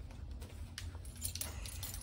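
Faint light rattling and a few clicks from a large wicker trunk with metal fittings being handled and wheeled, over a low rumble.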